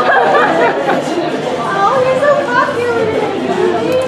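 Indistinct chatter of several overlapping voices, with no clear words.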